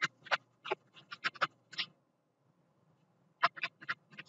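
Stylus tapping and scratching on a tablet screen while handwriting: a quick string of short clicks, a pause of about a second and a half, then more clicks near the end.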